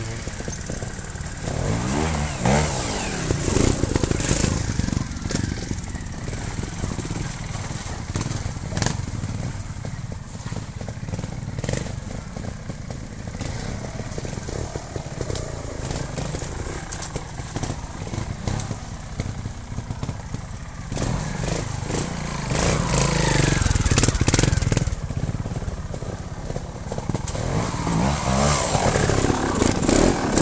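Trial motorcycle engines running at low revs, blipped up and down a few times: about two seconds in, again around twenty-two seconds, and near the end.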